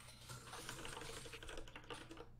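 Typing on a computer keyboard: a quick, faint run of keystrokes.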